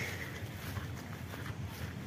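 Faint footsteps of a person walking over grass and bare dirt, over a steady low rumble.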